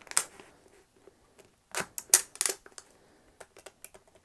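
Utility knife blade cutting around a thin aluminum drink can: irregular sharp clicks and scrapes as the blade works through the metal, loudest in a cluster about two seconds in, with lighter ticks near the end.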